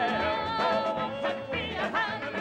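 Southern gospel song: a singer holds a long high note and then moves on, over the band's accompaniment.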